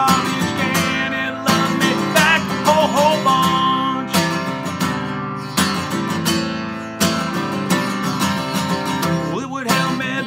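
Acoustic guitar strummed steadily, with a man singing over it for the first few seconds and again near the end.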